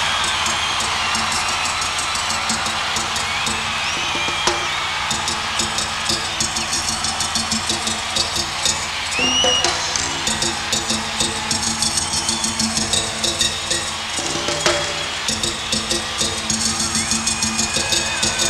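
Berimbau, a wooden musical bow with a gourd resonator, its steel wire struck with a stick in a steady, repeating rhythm. A crowd cheers and whistles behind it.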